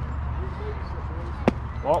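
A single sharp impact of a pitched baseball about one and a half seconds in, over the murmur of spectators at a youth baseball game.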